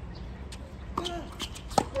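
Tennis ball in play on a hard court: several sharp pops of racket strikes and ball bounces, the loudest near the end, with short squeaks in between.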